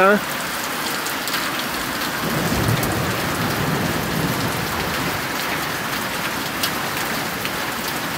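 Heavy thunderstorm downpour, rain pouring steadily. A low rumble of thunder swells about two seconds in and dies away over the next couple of seconds.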